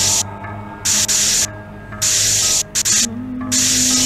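A blowtorch flame hissing in repeated bursts of about half a second, roughly once a second, over a low steady musical drone.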